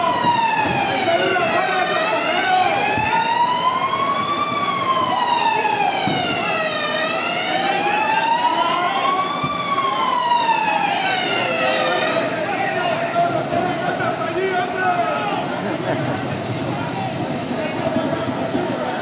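Emergency vehicle siren wailing, slowly rising and falling about every five seconds, then stopping about twelve seconds in. The voices of a street crowd carry on underneath.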